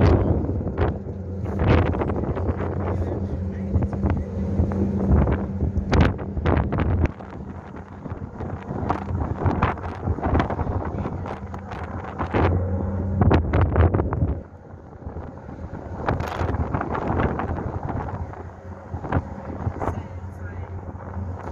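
Wind buffeting the microphone on a moving ferry's open deck, over the steady low hum of the ship's engines. The gusts come and go and ease off about a third of the way in and again past the middle.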